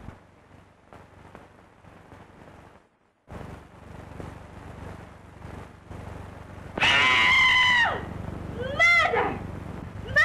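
A woman's loud scream, held about a second and falling away at the end, followed by short wailing cries, over the hiss and crackle of an early-1930s film soundtrack.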